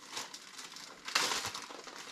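Plastic tortilla bag crinkling as a tortilla is pulled out of it, loudest a little over a second in.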